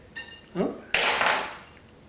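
A short electronic chime of a few high tones, a doorbell announcing a delivery, followed by a man's startled "oh" and a short rush of noise about a second in.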